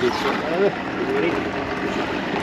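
Quiet, low talk from people close by over a steady background hiss, with no other distinct sound.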